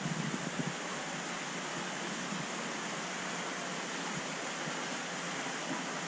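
Steady rushing noise of water circulating through large aquarium tanks, with the flow turned up, an even hiss with no separate events.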